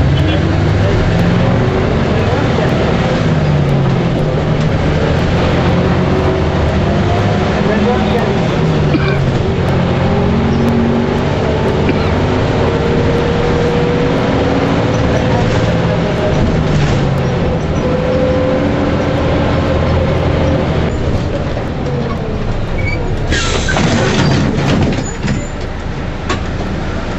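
City bus diesel engine heard from inside the bus, its pitch rising and falling repeatedly as it pulls away and changes gear in traffic. Near the end comes a short, loud hiss of the air brakes venting.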